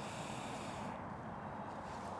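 Quiet, steady outdoor background noise with no distinct events.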